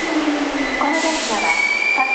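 Hankyu 3300 series electric train's traction motors whining as it pulls in and slows, the pitch falling. A thin high squeal joins in the second half, with a voice faintly in the background.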